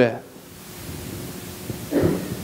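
A man's voice finishes a word at the very start, then pauses. The rest is a steady low hiss of room tone with a faint constant hum.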